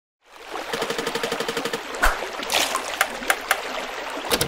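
Sound effects for an animated logo: water trickling and splashing, with a rapid run of ticks under a steady tone, a thump about two seconds in, then a few sharp clicks.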